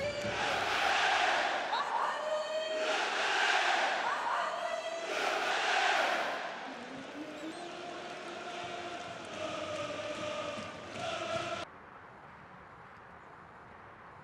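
Football stadium crowd chanting and cheering, rising in three loud swells before settling to a lower din. The sound cuts off suddenly near the end.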